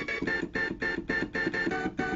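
A sampled 8-bit synth stab from an Amiga 1200 playing a fast riff of short repeated notes, about six a second. The notes shift in pitch near the end.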